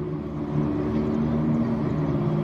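A vehicle engine running steadily: a low, even hum with no change in pitch.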